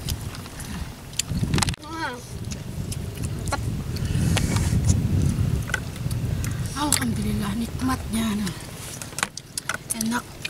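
A family eating a meal with their hands outdoors: scattered small clicks and rustles of eating. A child's high voice comes in briefly about two seconds in, and another voice about three seconds from the end, over a steady low rumble.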